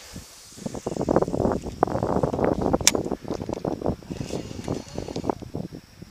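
Close rustling and scraping of handling noise against the camera microphone, with one sharp click about three seconds in.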